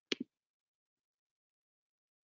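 A brief double click near the start, then dead silence.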